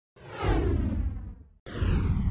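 Two descending whoosh sound effects over a deep low rumble, part of a TV news opening sting. The first sweeps down and fades out, and after a brief silence the second starts just before the end.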